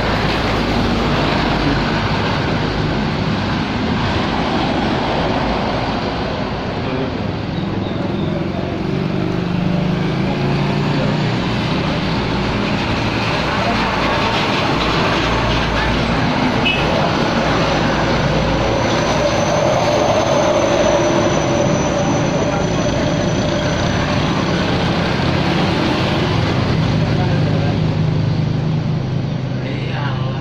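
Road traffic: trucks passing close by one after another, engines and tyres making a loud, continuous noise that swells as each one goes past.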